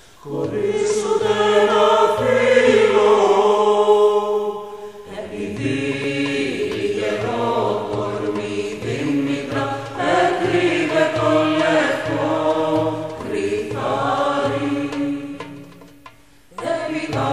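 A chorus of voices chanting a slow melody, with a low held note beneath it. The singing dips briefly about five seconds in and fades out near the end.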